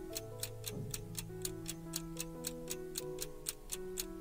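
Countdown-timer clock ticking sound effect, about four even ticks a second, over soft sustained keyboard background music.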